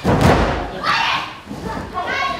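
A wrestler's body slamming onto the ring mat with a heavy thud at the start, followed about a second later by a loud shout.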